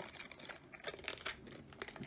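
Foil wrapper of a Pokémon trading-card booster pack crinkling as it is handled and torn open by hand, a scatter of small crackles.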